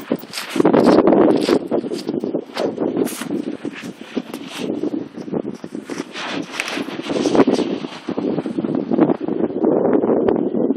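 Footsteps trudging on beach sand, with wind gusting and rumbling on the microphone.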